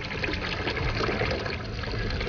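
Kitchen faucet running into a glass bowl of thin-cut potatoes, water splashing as the potatoes are stirred by hand to rinse out their starch.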